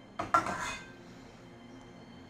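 Metal spoon clinking and scraping against a pot and bowl as food is dished out: a quick cluster of clinks in the first second.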